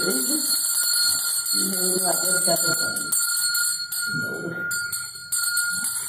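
A small brass puja hand bell rung continuously, a steady ringing that stops shortly before the end, with women's voices in short sung or spoken phrases in between.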